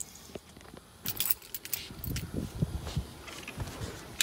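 A bunch of car keys jangling and clicking as they are handled, starting about a second in.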